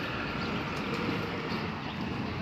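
Steady background noise with no distinct events, of the kind heard from distant traffic.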